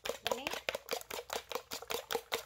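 A fork beating raw eggs in a bowl, clicking against the bowl quickly and evenly, about six or seven strokes a second. The eggs are being beaten hard so they turn out fluffy.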